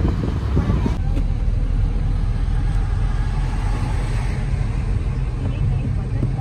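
Steady low rumble of a moving car's engine and tyres heard from inside the cabin, louder and gustier at first and settling about a second in.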